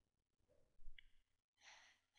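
Near silence: room tone, with a faint breath or sigh a little under a second in and another soft breath near the end.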